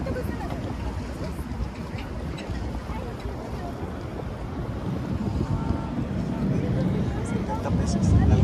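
Low rumble of a passenger ferry under way, mixed with wind buffeting the microphone on the open deck, growing louder toward the end; passengers' voices chatter in the background.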